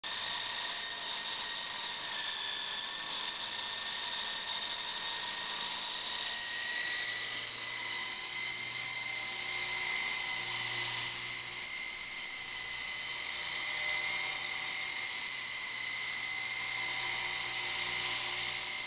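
Radio-controlled Bell 47G model helicopter running: a steady high motor whine with rotor noise. Its pitch rises slightly about seven seconds in and then holds.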